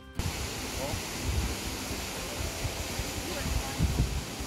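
Steady rushing roar of a distant high waterfall, with wind buffeting the microphone in irregular low gusts. It comes in abruptly just after the start.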